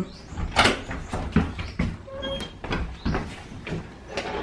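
A wooden door being opened and handled: a series of knocks and clicks, the loudest about half a second in, with a short squeak about two seconds in.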